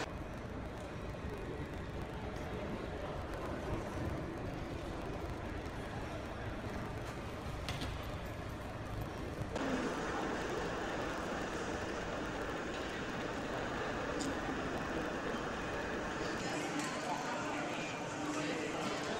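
Airport terminal hall ambience: a steady hum and rumble with indistinct background voices of travellers. The background changes abruptly about ten seconds in.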